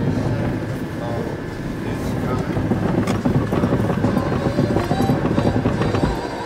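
Road and engine noise inside a small Ford car's cabin, driving over a rough, snow-covered track: a steady, uneven rumble of tyres and suspension.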